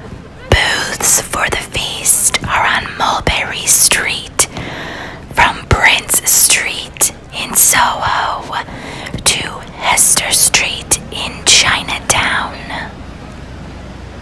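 A person's voice close to the microphone, whispering in short phrases, stopping about a second before the end and leaving a steady background hum.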